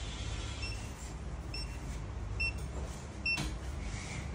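Veterinary pulse-oximeter monitor beeping once per heartbeat, four short high beeps a little under a second apart, as it tracks the anaesthetised dog's pulse. A steady low hum runs underneath, and a sharp knock comes near the end.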